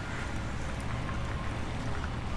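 Steady low outdoor background rumble with a faint even hiss above it.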